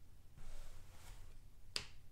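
Trading cards being handled: a faint rustle, then a single sharp click near the end.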